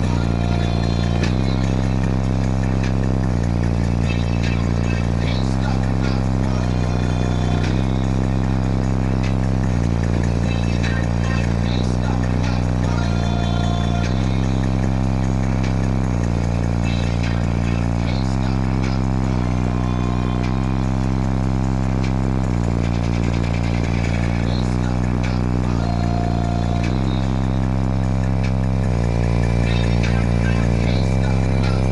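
Bass-heavy music played very loud through a competition car audio system, heard inside the car: long, sustained low bass notes that change pitch every second or two, with the rest of the track above them.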